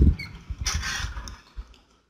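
A bunch of keys rattling and clicking in a door lock as it is unlocked, with a sharp knock or click at the start.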